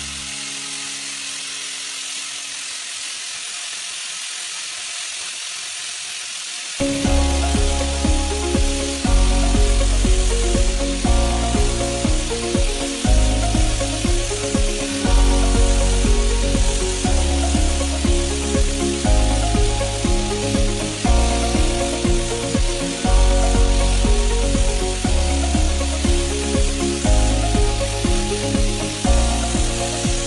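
Angle grinder with an abrasive wheel running against the metal bottom of a pan, a steady hiss. About seven seconds in, background music with a heavy, pulsing bass line starts and is loudest from then on.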